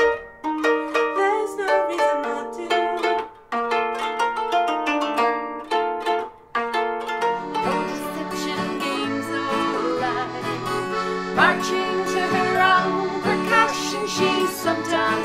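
Koto played with plucked picks, a melody of separate ringing notes. About seven seconds in, the music cuts to a different live piece with sustained chords over a bass line.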